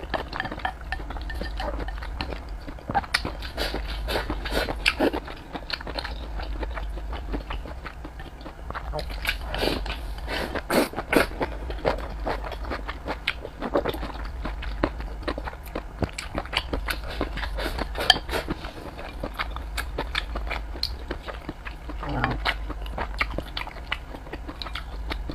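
Close-miked eating of rice and braised pork belly: chewing and wet mouth sounds, with chopsticks clicking against the rice bowl in many short, irregular clicks, over a steady low hum.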